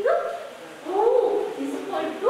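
A woman's voice reciting drawn-out Hindi syllables, each vowel held briefly with its pitch rising and falling.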